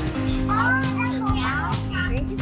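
A young child's high voice talking over background music with a steady beat.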